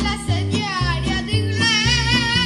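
A boy singing into a microphone over a backing track, with a bass line that steps between notes several times a second. About halfway through he holds a long note with vibrato.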